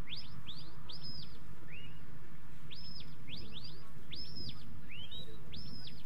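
Sheepdog handler's whistle commands: about ten sharp notes that each swoop up, hold high briefly and drop, some in quick pairs and runs, with one lower, shorter note near the two-second mark. They are the signals steering the dog as it drives the sheep through the gates.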